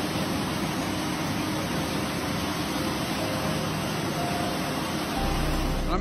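Steady rushing noise with no clear pitch, joined by a low hum about five seconds in.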